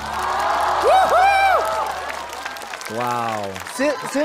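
Studio audience applauding, with voices speaking over the clapping.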